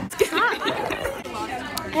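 Several people's voices talking and chattering at once.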